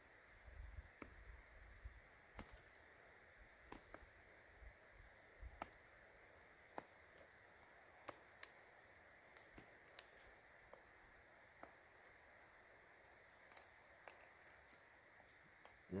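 Faint, irregular clicks and snicks of a Boker Plus Bushcraft Kormoran fixed-blade knife cutting a notch into a cedar stick, over near silence.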